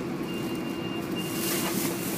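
A bus engine runs steadily, heard from inside the bus, as a low hum. Over it sits a thin, steady, high-pitched tone that stops near the end, and a brief faint hiss comes just before the end.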